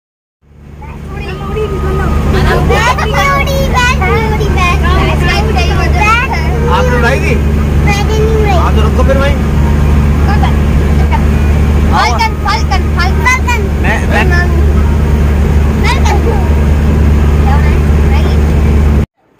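Bus engine droning steadily inside the passenger cabin, fading in over the first couple of seconds, with people's voices, including a child's high voice, talking over it.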